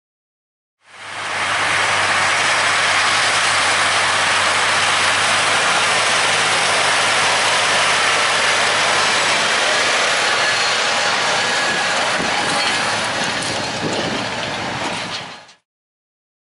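John Deere 9410R four-wheel-drive tractor pulling a field cultivator through dry soil: the diesel runs steadily under load over a continuous hiss of tines working the ground. Metal clattering comes from the cultivator near the end. The sound fades in about a second in and fades out just before the end.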